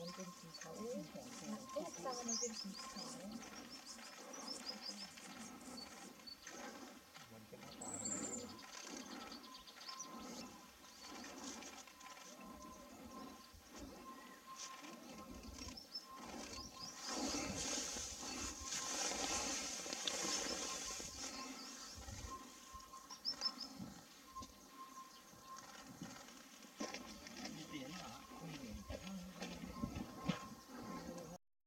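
Small birds chirping and calling with short high notes, over indistinct human voices in the background.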